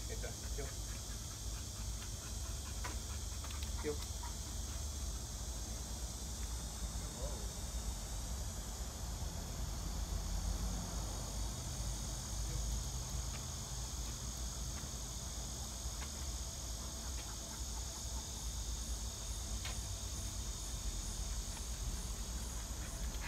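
Steady, high-pitched chorus of insects over a low rumble, with a few faint clicks.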